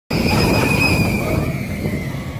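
Rita steel rollercoaster train running past overhead on its track: a loud rumble with a steady high wheel whine that sinks slightly in pitch and fades as the train moves away.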